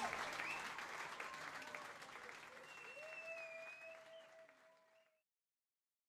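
Concert audience applauding, fading steadily, with a faint held tone in the second half. The sound cuts off about five seconds in.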